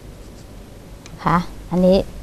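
Faint scraping and light clicks of a small carving knife cutting into papaya flesh. A woman starts speaking a little past the middle.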